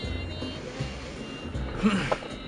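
Low rumble of a car driving slowly, heard from inside the cabin, with music playing quietly underneath. A short vocal sound comes near the end.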